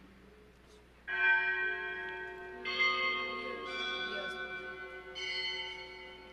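Bells rung at the elevation of the chalice during the consecration at Mass: four separate rings, starting about a second in, each sounding on and slowly fading.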